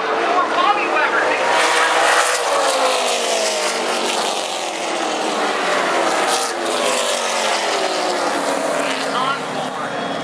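Late model stock cars racing past at speed, their V8 engines running hard. The engine pitch falls as each pack goes by, about two to four seconds in and again later on, with crowd voices underneath.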